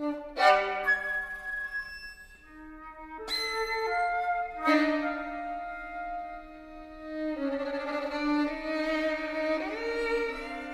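Contemporary chamber music for flute, violin, viola and cello: long held notes and chords. Sharp, accented entries come about half a second in, at about three seconds and just before five seconds, and the harmony shifts again past seven seconds.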